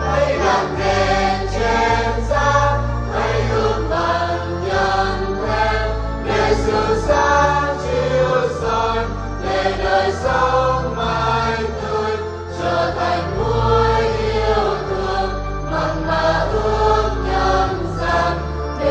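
Vietnamese Catholic church choir singing a hymn in parts over instrumental accompaniment, with a steady held bass underneath.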